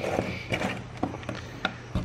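Scattered sharp clicks and taps of a steel screwdriver and a hard plastic adapter case being handled as the blade is set into the case's welded-shut seam, over a low steady hum.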